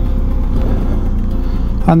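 Motorcycle engine running with steady wind and road rumble picked up by the bike-mounted microphone while riding.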